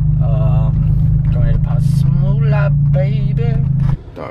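Steady low drone of a Mazda car's engine and road noise heard inside the cabin while driving, with a man's voice over it. The drone cuts off suddenly just at the end.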